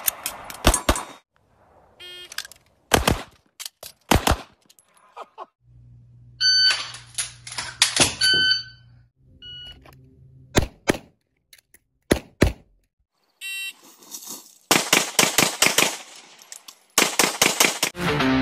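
Handgun shots fired in several quick strings of two to six shots, separated by short pauses. Through the middle there are ringing metallic tones after some shots and a steady low hum.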